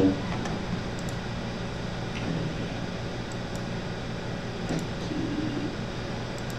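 Steady low room hum, like a fan or air conditioning running, with a few faint clicks.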